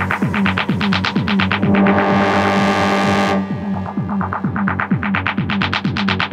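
Techno track in a DJ mix: a steady kick drum with fast hi-hat ticks. Under two seconds in, a sustained noisy swell and chord comes in over the beat and cuts off suddenly just after three seconds, leaving the beat running.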